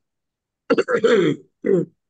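A man clearing his throat: a longer bout starting about two-thirds of a second in, then a short one near the end.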